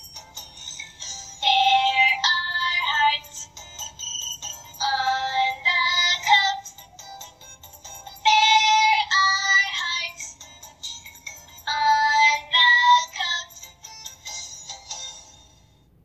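A talking reading pen plays a synthesized sung chant through its small speaker: four short high-pitched sung phrases, a few seconds apart.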